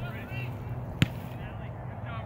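A soccer ball kicked once on a grass field: a single sharp thump about a second in, over faint distant voices of players and spectators.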